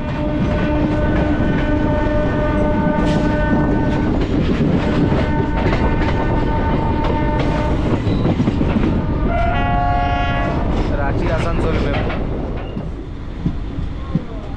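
Running noise and rail clatter of an electric MEMU passenger train, heard from its open doorway, with train horns. A long steady horn sounds from about half a second in to about four seconds, another from about six to eight seconds, and a short, higher-pitched horn comes around ten seconds. The running noise eases off near the end.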